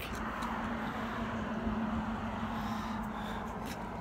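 Steady outdoor background noise: an even hum with one faint, steady low tone and no sudden sounds, typical of vehicle traffic around an open lot.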